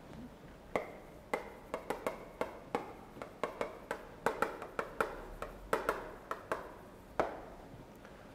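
Chalk writing on a chalkboard: an irregular run of sharp taps and short scratchy strokes as characters are written, stopping about seven seconds in.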